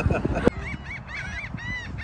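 Birds calling in a rapid series of short, arched, honking calls, several a second, beginning about half a second in.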